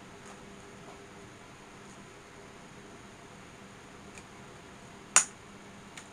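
X-Acto craft knife cutting out a window in a paper-covered cutout on a cutting mat: a few light ticks over quiet room hiss, then one sharp click near the end.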